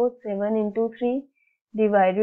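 Only speech: a voice talking through the working of a maths problem, with a brief pause a little past the middle.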